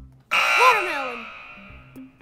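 Wrong-answer buzzer sound effect: a harsh buzz that starts suddenly about a third of a second in and fades away over a second and a half, marking a failed turn, over light background music.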